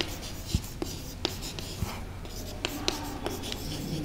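Chalk writing on a blackboard: a run of short, sharp, irregular taps and scratches as a word is written.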